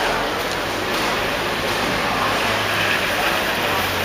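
Steady rushing noise of wind on a hand-held camera microphone, with a low hum underneath from about a second in and faint voices.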